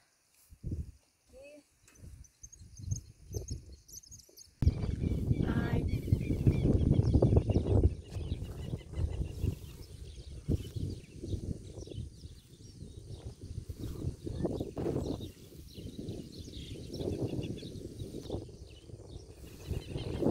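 A few soft, quiet rustles, then a sudden jump about four and a half seconds in to outdoor wind rumbling and buffeting on the microphone, strongest for the next few seconds and then settling lower.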